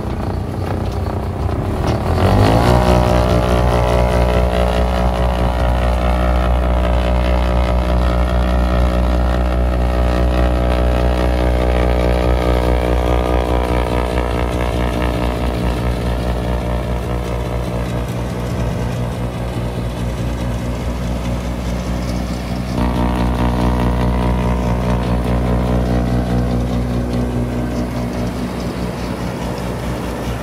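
Case IH MX100C tractor's diesel engine running steadily at working revs while driving a PTO snowblower that is throwing snow. The engine note steps up abruptly about two seconds in and changes again suddenly about 23 seconds in.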